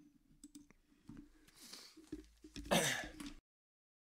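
A few faint computer mouse clicks, then a man clears his throat near the end, and the sound cuts off suddenly.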